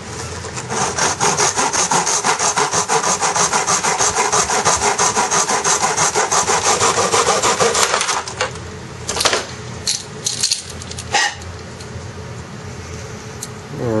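Hand miter saw cutting through a carbon fiber seatpost tube in a plastic miter box, with fast, even back-and-forth strokes that stop about eight seconds in once the cut is finished. A few scattered clicks and knocks follow as the cut piece is handled.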